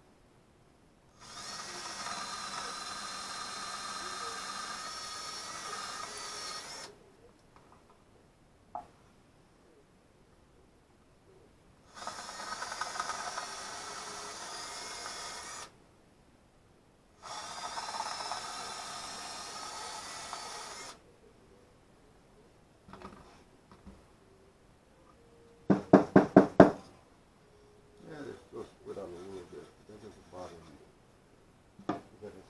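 Cordless drill boring holes into a wooden board, running in three bursts of several seconds each with a steady motor whine. Near the end comes a quick run of about eight loud knocks, the loudest sound here.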